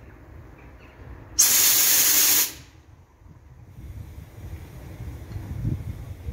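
Compressed air blowing off from an electric locomotive's pneumatic system: a sudden loud hiss about a second and a half in, lasting about a second before it cuts away, over a low rumble.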